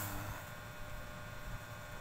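Quiet room tone with a faint steady electrical hum, and the end of a drawn-out hesitant 'uh' at the very start.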